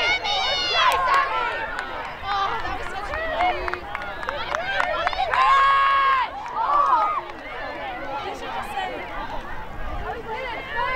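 High voices shouting and calling out across the field, with one long held yell a little past halfway.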